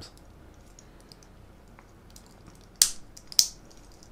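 Stainless steel watch bracelet and its milled folding clasp handled by hand: faint small ticks and clicks of metal, then two sharp metallic clicks about half a second apart near the end.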